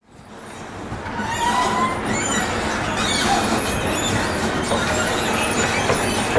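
Escalator running: a steady mechanical rumble with a few faint squeaks, fading in over the first second or so.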